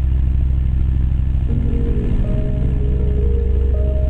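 Light propeller aircraft's engine droning steadily in flight, with music notes coming in over it about a second and a half in.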